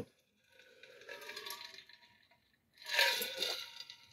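A man drinking from a plastic tumbler-style mug: faint sipping and swallowing, then a louder, short, breathy noise about three seconds in as he finishes the drink.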